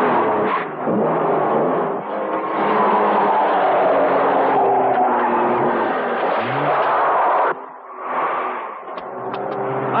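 A car engine revving hard with tyre noise as a car drives off at speed; the sound drops suddenly about seven and a half seconds in, then a quieter engine sound builds again near the end.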